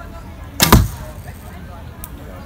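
A recurve bow being shot: one sharp snap of the string as the arrow is loosed, a little over half a second in.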